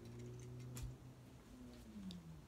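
A low, steady hum from a person, gliding down in pitch near the end, with a few faint ticks.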